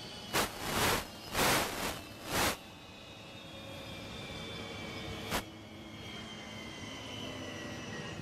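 Mi-8-type helicopters' turbine engines winding down after landing, a whine slowly falling in pitch over a steady hum. Gusts buffet the microphone loudly several times in the first two and a half seconds, and there is a single sharp click about five seconds in.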